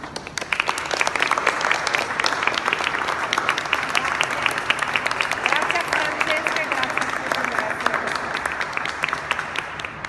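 A small group of people clapping their hands in applause, dense and quick, tapering off near the end.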